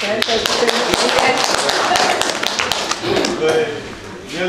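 A room of people clapping, a dense patter of many hands, with voices over it. The clapping dies down near the end.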